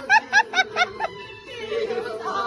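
A person laughing in a quick run of about six short "ha"s during the first second, over background music with a steady held note.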